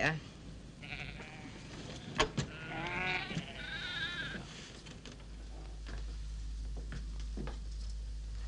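Sheep bleating: a quavering bleat about three seconds in, followed at once by a second, higher bleat. A low steady hum sets in about five seconds in.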